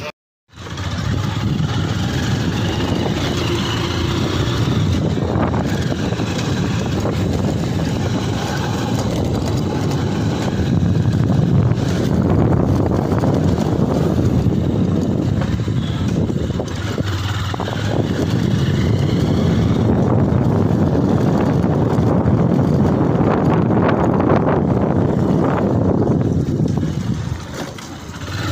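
Motorcycle ride noise: engine running with wind rumbling on the microphone, loud and steady with slow swells. It starts after a brief dropout.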